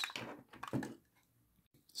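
Faint handling noises from a plastic model locomotive being moved on a table, small crackles and knocks in the first second. It then falls to near silence, with one brief click near the end.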